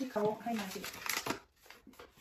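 A person talking briefly, over light rustling of plastic packaging being handled.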